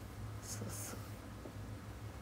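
A woman's soft, whispered "sa… sa" syllables: two short hissing bursts about half a second in, over a steady low hum.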